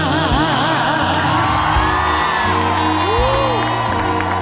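Live backing band playing an instrumental break in a slow ballad, with held bass notes under a melody line. Audience whoops and cheers come over the band in the first second or so.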